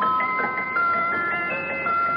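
A musical box playing its tune: a melody of plinked metal notes, each ringing on as the next one starts.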